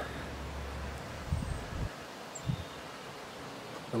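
Quiet open-air back-yard ambience: a faint steady hiss of wind and leaves, with a low hum for about the first second and a few soft low thumps in the middle.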